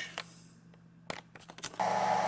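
Quiet room tone with a few small clicks; near the end a steady hum with a faint whine starts from a hobby battery charger running.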